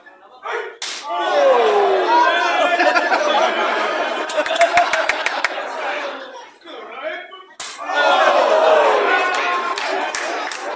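Two loud slapping strikes land in a pro-wrestling strike exchange, one about a second in and another about three-quarters of the way through. Each is answered at once by the crowd yelling in reaction.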